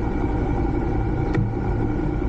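Motor scooter engine idling steadily, with a single short click about one and a half seconds in.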